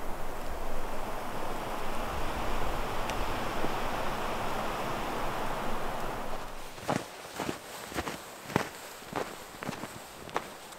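Footsteps crunching in snow, about two steps a second, beginning about seven seconds in, after a steady rushing noise that fades out.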